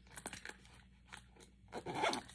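Faint handling noise: scattered small clicks and rustles of plastic cosmetic items and a fabric makeup pouch being picked up and handled with long acrylic nails.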